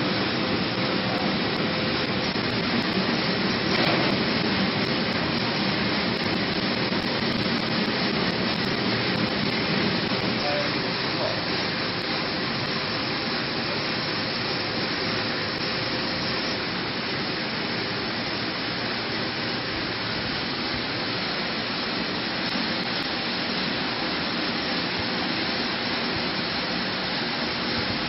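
Steady, even hiss of food deep-frying in hot oil in a stainless-steel automatic batch fryer.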